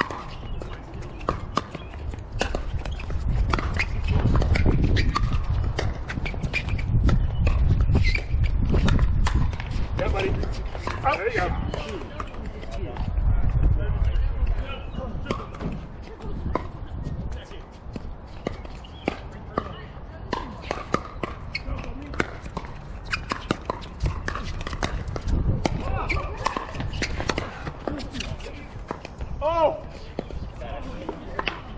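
Pickleball rally: sharp, irregularly spaced pops of the plastic ball off the paddles and the court, over low wind rumble on the microphone that swells several times. Faint voices come in now and then.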